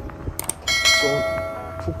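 Subscribe-button animation sound effect: a quick double mouse click, then a bright bell chime that rings out and fades over about a second.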